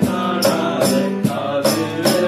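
Two male voices singing a Tamil Christian song in unison over strummed acoustic guitar, with cajon and hand percussion keeping a steady beat of a little over two strikes a second.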